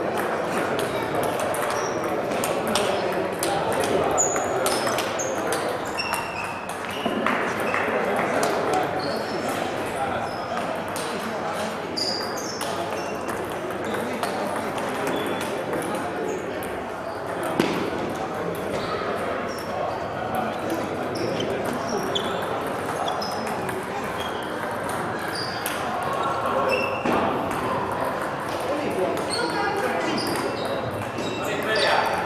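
Table tennis rallies: the ball clicks sharply off the bats and the table in quick, irregular runs, with more ball sounds from other tables mixed in. Voices murmur steadily underneath.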